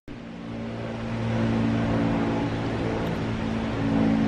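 A steady, low mechanical hum from an engine or motor running at an even speed, growing a little louder over the first second or two.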